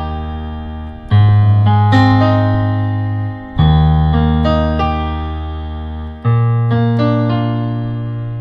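Yamaha PSR-SX900 arranger keyboard in a piano voice, played with both hands through a slow one–four–one–five (I–IV–I–V) chord progression. Each chord is held about two and a half seconds over a new bass note and fades slowly until the next is struck: about a second in, three and a half seconds in, and six seconds in.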